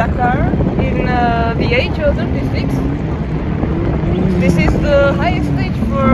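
A vehicle engine running in the background, its pitch rising and easing off slowly in the second half, under a steady low rumble of wind on the microphone.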